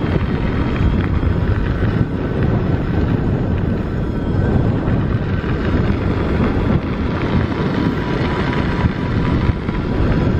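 Wind buffeting the microphone and tyres rumbling on a dirt and gravel track as a 1000-watt, 48-volt electric bicycle with no suspension rides along at speed, with a faint steady whine over the noise.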